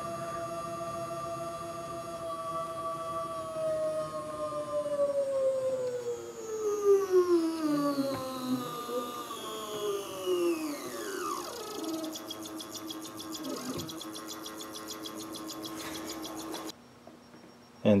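Stepper motor of a homemade honey extractor whining with several steady tones. These glide down in pitch over several seconds as the spinning frame basket slows from 200 RPM, then settle on one lower steady tone that cuts off suddenly near the end.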